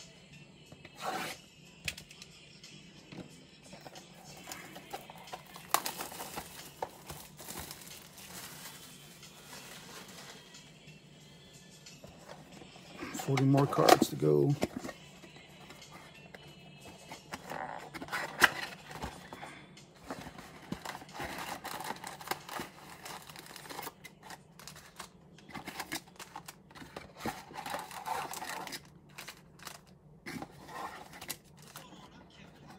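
Hands tearing and crinkling the plastic wrap off a cardboard trading-card box, opening its flaps and shuffling foil packs, with scattered clicks and rustles. A louder pitched, voice-like sound comes about halfway through, and speech and music sit faintly underneath.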